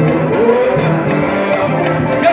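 Live samba played on cavaquinho and acoustic guitar, strummed steadily over a repeating low beat, with a singing voice.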